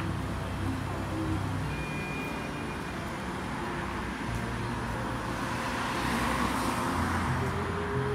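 Road traffic on a city street: cars going by, with one passing louder about six to seven seconds in.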